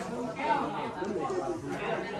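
Indistinct chatter of several people talking in the background, no words clear.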